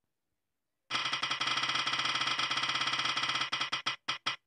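Spinner-wheel app's tick sound effect: a fast run of clicks as the on-screen wheel spins, starting about a second in and slowing toward the end as the wheel coasts down.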